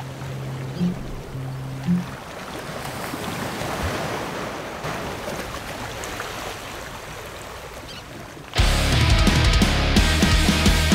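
Heavy ocean surf breaking, a steady roar of crashing whitewater that swells and eases, under a few soft low music notes that die away in the first two seconds. Loud electric-guitar rock music cuts in suddenly near the end.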